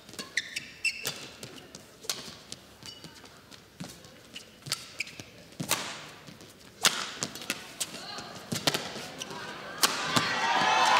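Badminton rally: sharp racket strikes on the shuttlecock, one every half second to a second, with brief shoe squeaks on the court mat early on.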